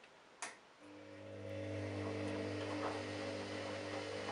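Candy front-loading washing machine: a sharp click about half a second in, then the drum motor starts and rises over about a second to a steady hum as the drum turns the wet load. This is the start of a tumble after the pause in the wash action.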